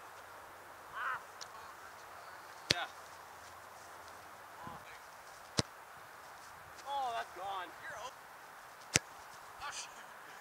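A soccer ball kicked three times, about three seconds apart: short, sharp thuds of a boot striking the ball. Faint voices call out between the kicks.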